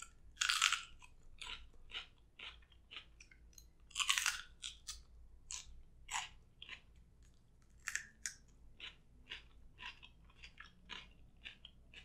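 Close-miked eating of something crunchy: a crisp bite about half a second in, another around four seconds in, then steady crunchy chewing, about two to three crunches a second.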